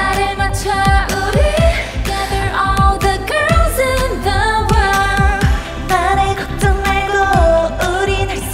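Upbeat K-pop song performed by a girl group: female voices singing over a steady drum beat and bass.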